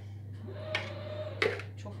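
A metal spoon scraping sauce out of a plastic bowl, knocking against it twice, the second knock about a second and a half in and sharper, over a steady low hum.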